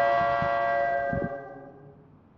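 Ambient synthesizer music: a sustained, bell-like chord of several steady tones that fades away near the end, with two soft low thumps under it, about half a second and just over a second in.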